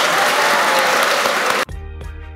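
Audience applauding, cut off abruptly about one and a half seconds in by music with a steady beat.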